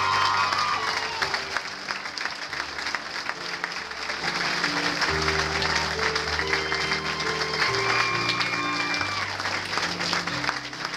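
An audience applauding over background music that plays slow, long-held notes.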